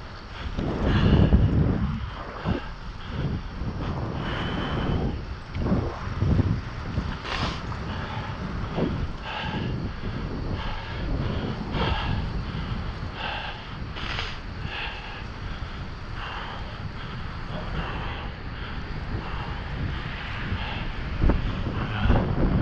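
Wind rushing over the microphone of a bicycle-mounted camera during a ride on a paved trail: a steady low rumble with a strong gust about a second in, and many short clicks throughout.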